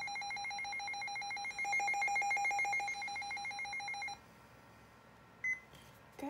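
Midland WR-300 weather alert radio sounding its siren test: a steady, rapidly pulsing electronic alarm tone, muffled by a hand held over the speaker because it gets loud, louder for about a second in the middle and cutting off about four seconds in. A single short beep follows near the end.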